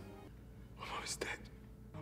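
A short, breathy whisper about a second in, over a faint, steady low hum.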